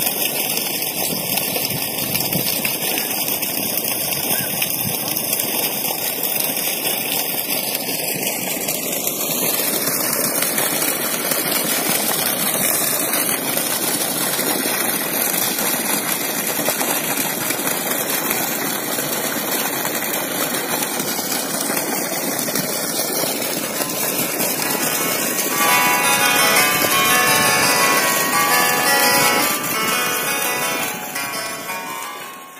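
Steady rush of water pouring from the outlet of a solar-powered pump's delivery hose into a shallow muddy pond. Music with bell-like tones comes in near the end.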